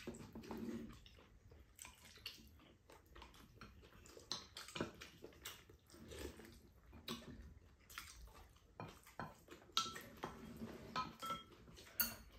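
Quiet eating sounds: chewing, with metal spoons scraping and clicking against ceramic bowls of rice, in scattered short clicks.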